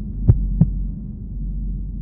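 Instrumental passage of a recorded rap track: a low, steady droning hum, with two heavy thumps about a third of a second apart a little after the start.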